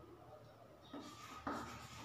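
Chalk scratching on a blackboard as letters are written: faint at first, then short scratchy strokes in the second half.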